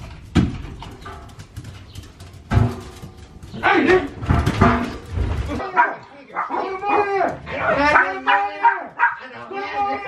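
Small dog barking and whining in a run of high calls through the second half, after a couple of sharp knocks from the front door near the start.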